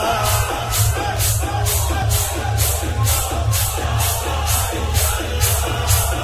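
Break between the sung lines of a shur mourning chant: a steady rhythmic beat of about two strikes a second over a constant low bass, with no voice.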